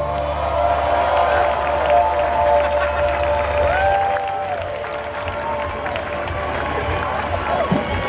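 A live rock band's final chord rings out in sustained guitar and bass tones while a festival crowd cheers. The bass drops out a little under four seconds in, leaving held guitar tones under the cheering.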